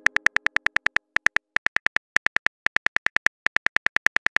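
Simulated phone keyboard typing clicks, one short tick per keystroke at roughly eight to ten a second, coming in runs with brief pauses as a text message is typed out.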